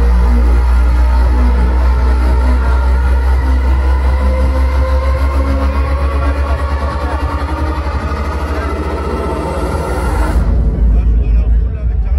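Loud electronic bass music from a festival sound system, dominated by a heavy sub-bass. About ten seconds in, the upper sounds cut out suddenly, leaving the bass pulsing on its own.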